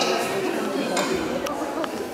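Children's voices and chatter echoing in a large hall, with two short clicks about a second and a second and a half in.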